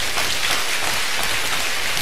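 Audience applauding: a dense, even crowd of clapping that carries on through the pause in the talk.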